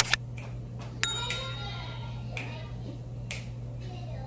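Close-up chewing of food, with soft mouth smacks about a second apart. A sharp click comes right at the start, and a sharper click with a brief ring comes about a second in.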